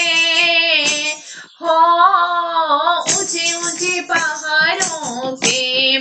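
A high voice singing a Hindi devotional bhajan to the mother goddess, holding long wavering notes, with a brief break in the singing about a second and a half in.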